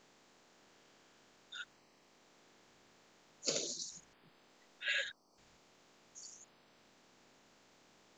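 Four short, faint breathy vocal sounds from a person, the loudest about three and a half seconds in.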